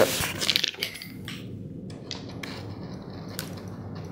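Plastic packaging crinkling as a hard drive is handled: a burst of crackling at first, then a few light clicks and taps.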